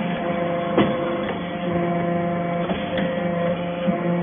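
Hydraulic briquetting press for cast-iron chips running with a steady, multi-toned hum from its pump and motor. A sharp click or knock comes just under a second in and another about three seconds in.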